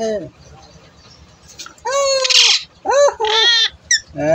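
Rose-ringed (Indian ringneck) parakeet calling: one longer, loud call about two seconds in, then two shorter calls just after three seconds, which the owner takes for anger.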